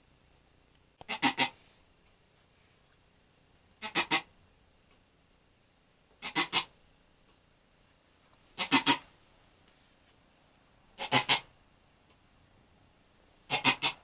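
A goat doe in labor crying out six times, about every two and a half seconds, each cry broken into two or three quick pulses.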